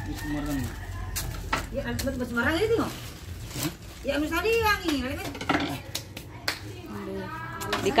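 Voices talking indistinctly in short, high-pitched phrases that rise and fall, with scattered sharp clicks and knocks between them.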